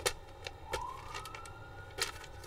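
A distant siren, faint, whose wail starts just over half a second in, rises in pitch and then holds steady. A few soft clicks sound over it.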